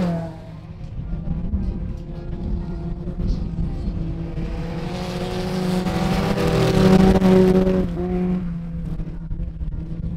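Folkrace hatchback engines running hard on a dirt track, with one car passing close. Its engine note climbs and grows louder to a peak about seven seconds in, then drops sharply about a second later.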